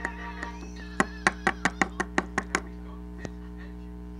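Quick run of about ten sharp plastic clicks from a Littlest Pet Shop bobblehead figure being handled, starting about a second in and lasting about a second and a half, over a steady low hum.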